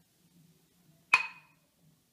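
A glass spice shaker gives one sharp clink with a short ring about a second in.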